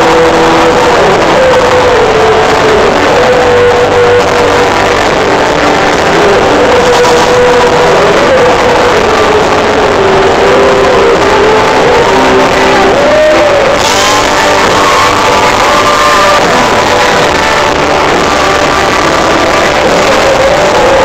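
Pop-rock band playing live, loud and continuous, heard from within the audience.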